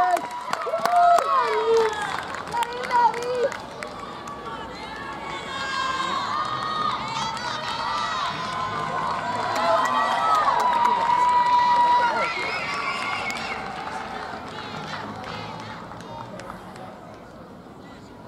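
Spectators cheering and shouting as a penalty is scored, with excited voices overlapping. The shouts ease after a few seconds, rise again into loud calling and chatter in the middle, then die down near the end.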